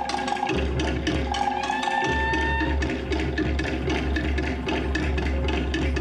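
Fast Polynesian drumming: wooden slit log drums beaten in a rapid, even rhythm over a steady deep drum, the kind of drumming that drives a Tahitian-style hip-shaking dance.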